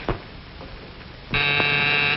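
An electric door buzzer sounds once: a steady, harsh buzz of a little under a second that starts about a second and a third in. Before it, right at the start, there is a short thump.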